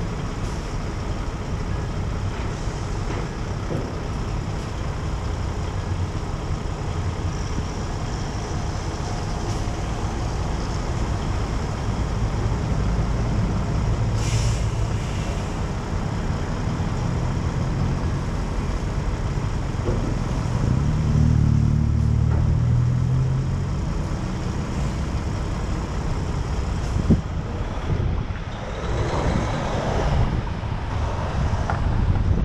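City street traffic with a tanker truck's diesel engine running close alongside, growing louder about two-thirds of the way through as it pulls away. A short hiss of air comes a little before halfway, and wind rushes over the microphone near the end as the car starts to move.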